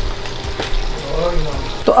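Chicken wings, tomatoes and whole spices sizzling steadily in hot oil in a steel pot, with a few light clicks of a metal spatula against the pot as the food is stirred.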